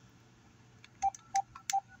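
Three light, irregularly spaced taps on a phone's touchscreen, each with a short single-pitch beep, starting about a second in.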